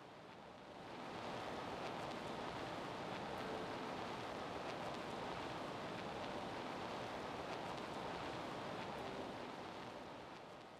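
Steady, even background hiss that swells about a second in and holds, with a few faint ticks.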